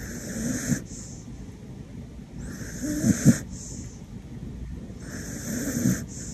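A small white shaggy dog snoring in its sleep: three snores about two and a half seconds apart, each a raspy breath ending in a brief low rattle.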